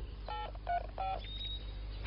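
Telephone keypad dialling tones: three short beeps, each of two notes at once, followed by a thin, high, steady tone.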